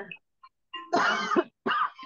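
Two short, breathy bursts of a person's voice about a second in, the first longer and louder than the second.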